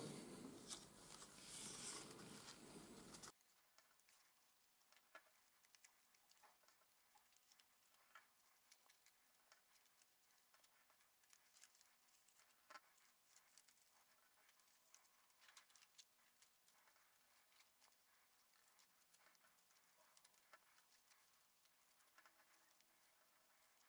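Faint rustling and crackling of thin cardboard being folded by hand along its creases for about the first three seconds, then near silence with an occasional faint tick.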